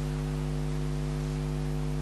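Steady electrical mains hum from the sound system: a low, unchanging buzz of several steady tones.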